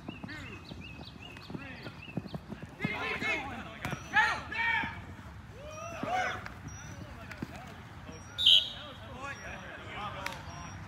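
Players' voices calling out across an open grass field in bursts, with birds chirping. A short, sharp high-pitched tone about eight and a half seconds in is the loudest sound.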